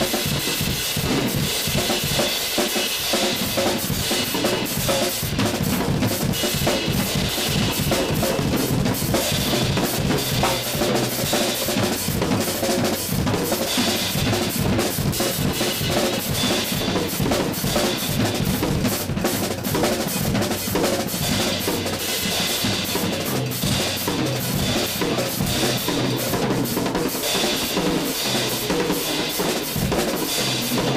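Acoustic drum kit played solo: a dense, unbroken stream of snare, tom and bass drum strokes under steady cymbal wash.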